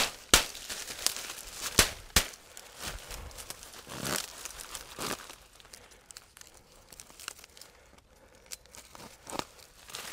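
Dry cut water reed rustling and crackling as a bundle of it is handled and tied, with several sharp snaps of stems in the first few seconds and softer rustling later.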